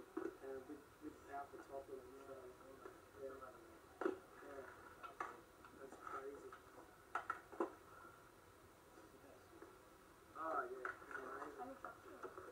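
Muffled man's speech from a VHS tape, played back through a TV speaker and sounding thin and boxy, with a few sharp clicks in the middle.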